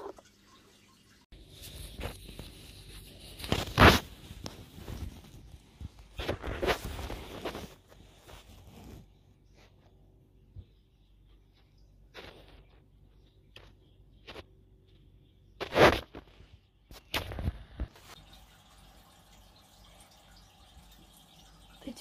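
Handling noise: a few scattered knocks and rustles, with a run of short clicks about halfway through.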